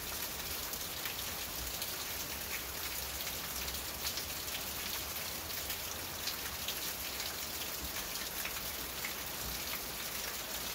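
Rain falling on the roof of a covered riding arena: a steady hiss scattered with many small, irregular ticks of drops.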